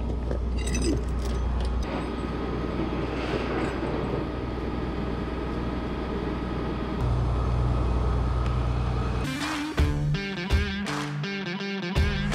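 Rollback tow truck's engine and hydraulic winch running steadily while pulling a car up the tilted steel bed, a low hum that eases off about two seconds in and comes back up about seven seconds in. Music comes in over it about nine seconds in.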